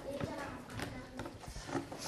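Indistinct voices chattering in a classroom, with scattered light knocks and taps.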